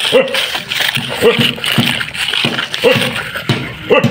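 Children's short exclamations and chatter, in about five brief bursts, over the scraping rush of sand pushed by a plastic toy front loader's bucket.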